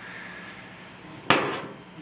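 A single sharp knock a little over a second in, with a short ring-off: the removed glow plug controller, a relay box on a metal bracket, knocking against the surface as it is picked up by hand.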